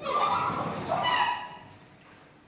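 Chalk drawn across a blackboard in one long stroke, scratching and squeaking with high-pitched tones for about a second and a half before it stops.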